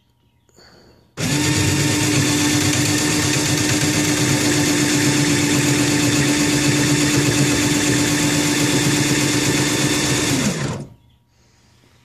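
Cordless drill motor, wired straight to a battery, running steadily with a held hum as it drives a greased threaded rod that tilts the incubator's egg trays. It starts about a second in and runs down in pitch as it stops near the end.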